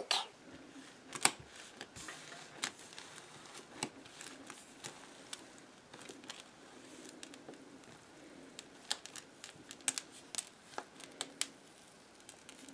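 Gold Kinetic Rock, small pebbles bound in a moldable compound, being squeezed and pulled apart by hand: faint scattered crackles and clicks, coming more often near the end.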